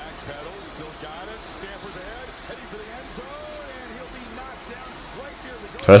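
Football game broadcast playing quietly in the background: a commentator's voice is faint under low crowd noise. A man says "Touchdown" loudly right at the end.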